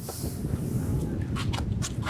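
Low wind rumble on an outdoor microphone, with a short scratch of a felt-tip marker on the paper scoreboard at the very start and a few light taps near the end.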